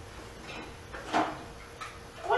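Faint sounds of people at a dinner table, with one short, noisy scrape a little over a second in.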